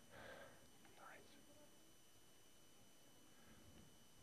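Near silence: lecture-hall room tone, with two faint breathy sounds, one at the start and one about a second in.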